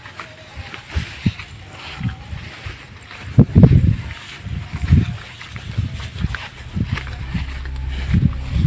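Irregular low thumps and rustling from walking through a rice paddy with a handheld camera, loudest about three and a half seconds in, with wind buffeting the microphone. A steady low hum comes in near the end.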